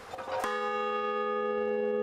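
A large hanging bell struck once about half a second in, then ringing on with a steady, even hum of several tones.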